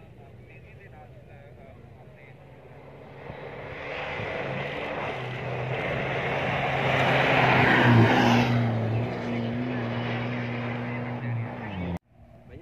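Rally jeep driving fast toward the listener along a sandy dirt track, its engine and tyre noise growing louder from about three seconds in. It is loudest about eight seconds in, then holds a steady engine note until it cuts off suddenly at the end.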